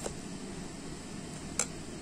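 Low steady room noise with two light clicks about a second and a half apart, from a spoon stirring thick banana batter in a bowl.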